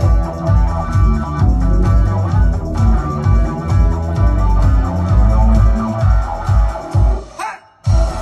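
A live band plays an instrumental passage with a heavy, pulsing bass beat and no singing. Near the end it drops out briefly under a rising sweep, then comes back in at full volume.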